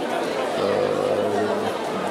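Background chatter of a crowd of people talking, with a man's voice holding a long, steady hesitation sound for about a second in the middle.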